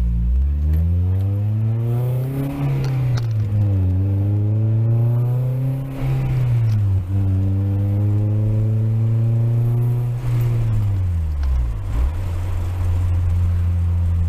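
Honda Prelude's four-cylinder engine heard from inside the cabin with the windows down, pulling hard through the gears of its manual gearbox. The pitch climbs, drops at a shift about two and a half seconds in, climbs again, drops at a second shift around six seconds, holds high, then falls away from about ten seconds and settles to a steady low note near the end.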